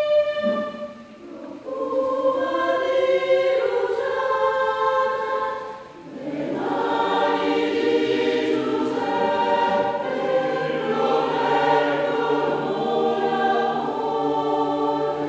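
Mixed choir singing a slow piece in several parts in long held notes, with two brief breaks between phrases: one about a second in, another about six seconds in. After the second break lower voices join and the sound fills out.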